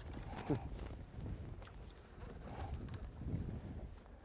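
Wind and choppy water noise around a small fishing boat, with a few faint knocks, and a short falling grunt about half a second in.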